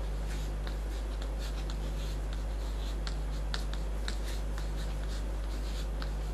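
Chalk writing on a chalkboard: a run of short scratches and taps as the chalk forms symbols, over a steady low electrical hum.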